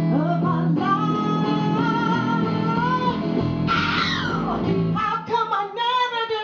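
Live performance of a woman singing with electric guitar accompaniment. She holds long notes, with a bright note sliding down about four seconds in, and the backing thins out near the end.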